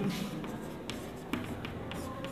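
Chalk writing on a chalkboard: quiet scratching with a few short taps as letters are chalked on.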